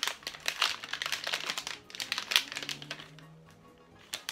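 A candy wrapper crinkling and crackling as it is handled and opened, the crackles thinning out in the last second or so, over faint background music.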